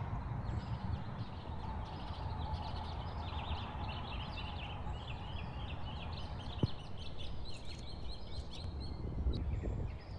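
Outdoor birds chirping and chattering, a steady run of many quick high notes, over a low rumble of outdoor noise. A single short tap sounds about six and a half seconds in.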